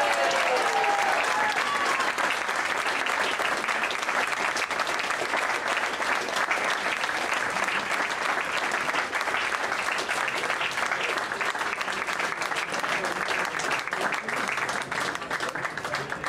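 Audience applauding, many hands clapping, slowly fading toward the end.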